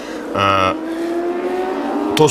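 Racing superbike engine at high revs, its pitch climbing steadily as the bike accelerates along the track.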